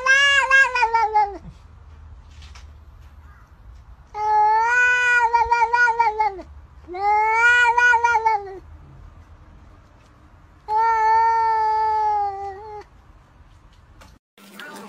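Domestic cat giving four long, drawn-out meows with short pauses between them, each rising and then falling in pitch.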